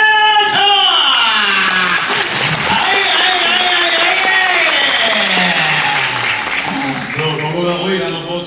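A man's held, amplified vocal note ends about a second in with a falling swoop. Audience applause and cheering follow, and his voice comes back near the end.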